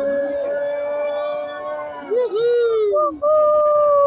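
A person cheering with long drawn-out whoops: one call held steady for about two seconds that dips in pitch, then a second held call starting about three seconds in that falls away near the end.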